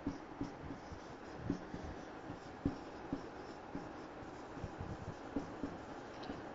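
Marker writing on a whiteboard: faint scratching with light, irregular taps as the letters are formed.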